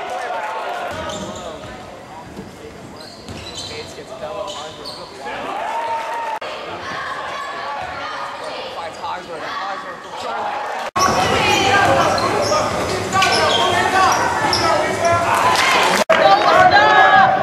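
Live basketball game sound in a gymnasium hall: a basketball bouncing on the hardwood court among players' and spectators' shouts. About eleven seconds in, an abrupt cut brings louder crowd voices.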